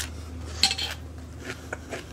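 Metal fork clinking and scraping against a salad bowl, a few short clinks with the loudest a little over half a second in, over a steady low hum.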